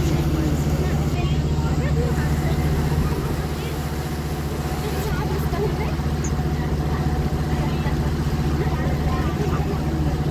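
A boat's engine running steadily on board, a low, even drone.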